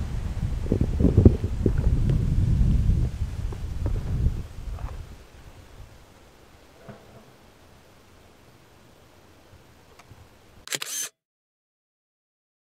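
A low rumbling noise for the first four seconds or so, then faint quiet. Near the end a short, sharp camera shutter click, after which the sound cuts off to total silence.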